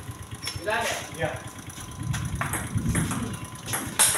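Table tennis ball clicking off paddles and the table as a rally starts, a few sharp ticks in the second half, over voices talking in the background.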